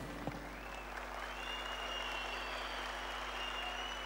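Large arena crowd applauding steadily, with a faint high thin tone running over it from about half a second in.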